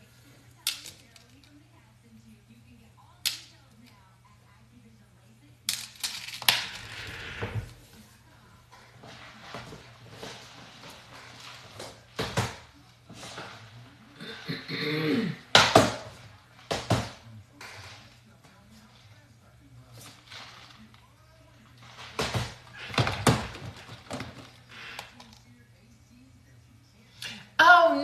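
Scattered sharp knocks and clicks of small objects being handled on a desk: pearls dropped into a ceramic dish and plastic containers picked up and set down. A low steady hum runs underneath.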